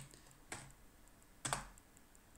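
Two keystrokes on a computer keyboard, about a second apart, as a username is typed and entered.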